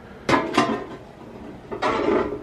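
Sheet-metal top cover of a CD changer clattering as it is handled and set down: two quick metallic clanks just after the start and another clatter near the end.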